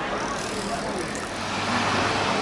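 Cars driving along the road, a steady mix of engine and tyre noise.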